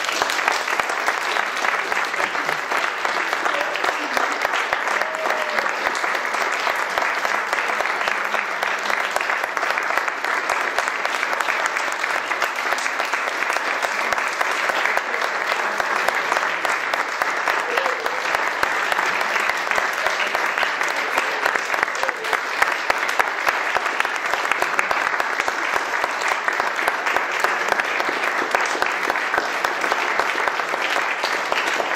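Audience applause: a roomful of people clapping steadily from the first moment to the last, with no break.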